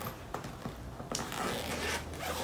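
Soft rustling and a few light clicks as hands handle the inside of a fabric diaper-bag backpack.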